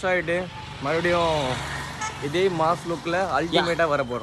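Men's voices talking and calling out, one loud drawn-out exclamation about a second in.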